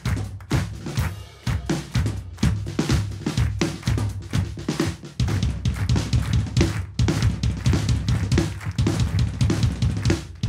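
Drum kit played live in a busy, steady rhythm: bass drum, snare and cymbals, dense strokes throughout.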